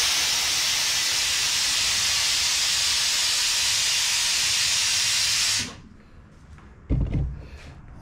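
A loud, steady hiss of gas under pressure lasting nearly six seconds, cutting off sharply, followed about a second later by a low thump.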